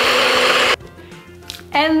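Small personal blender grinding unroasted pistachios into powder for pistachio flour, running loud and steady, then cutting off abruptly under a second in. Soft background music follows.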